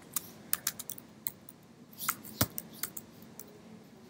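Computer keyboard keystrokes: a handful of separate clicks at uneven spacing, the loudest about two and a half seconds in.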